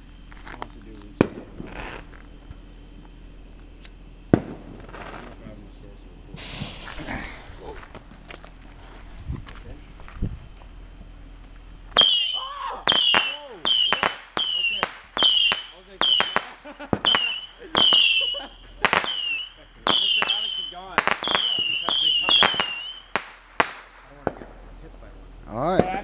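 Consumer repeater firework firing aerial shots: a brief hiss about seven seconds in, then, from about twelve seconds in, a rapid string of sharp bangs about two a second that lasts about eleven seconds and stops.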